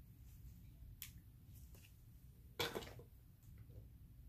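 Quiet room hum with small handling clicks: a faint one about a second in and a louder, brief click and rustle about two and a half seconds in.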